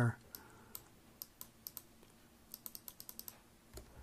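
Computer keyboard keys being tapped lightly: a few scattered keystrokes, then a quick run of about eight near the end, and one duller knock just before it ends.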